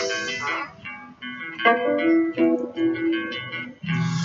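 Instrumental break in a song: a guitar plays a melody of single plucked notes, with no singing.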